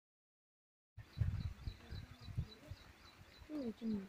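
Two short falling animal calls near the end, over a faint high chirping that repeats about four times a second. Before them come low rumbling bumps. All of it starts about a second in.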